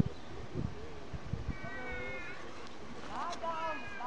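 Sheep bleating: one held call about one and a half seconds in, and another that rises and then holds near the end.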